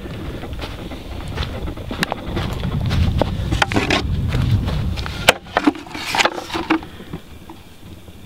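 Wind buffeting the microphone as a low rumble that swells and then dies away about five seconds in, with a few sharp clicks and rustles from footsteps and from the handheld camera being moved.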